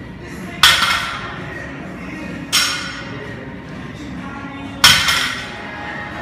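Loaded deadlift barbell set down on a rubber gym floor three times, about two seconds apart: each rep ends in a sharp metallic clank of the plates that rings briefly.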